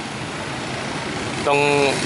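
Steady noise of motorbike traffic on a street, engines and tyres without any single standout event; a man's voice starts near the end.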